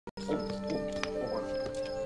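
Soft film score with long held notes, with a few brief creature-like vocal sounds from Stitch over it.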